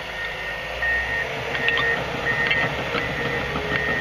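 Steady low machine hum in a dozer cab, with a high beeping tone that sounds several times at uneven intervals and a few faint clicks.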